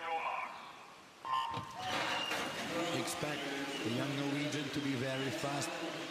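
Electronic start signal of a swimming race sounding once, about a second in. It is followed by rising arena crowd noise as the swimmers dive in.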